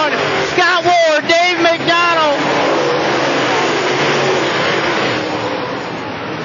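Dirt late model race cars at speed in a pack, their V8 engines running hard under throttle as a steady, dense engine noise.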